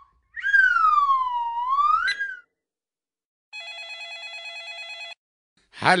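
A whistling sound effect, one pitched tone that swoops down and back up over about two seconds. After a short silence comes a single electronic telephone ring of about a second and a half, several tones together with a fast warble: a phone call ringing through.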